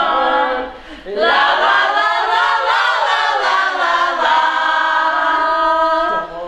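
Small group of women singing a cappella in close harmony, unaccompanied. After a short pause for breath about a second in, they hold long sustained chords.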